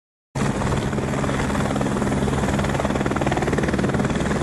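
Helicopter rotor sound effect: rapid, even blade chopping over a steady engine drone, starting suddenly about a third of a second in.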